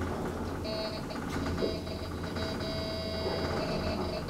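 Traction elevator car, an ASEA Graham lift modernised by KONE in 2008, travelling upward at full speed: a steady low hum of the ride with a high, steady whine that comes in under a second in and holds, briefly dipping now and then.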